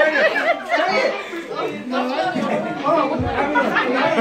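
A roomful of people talking and calling out over one another, with a brief low bump a little after three seconds in.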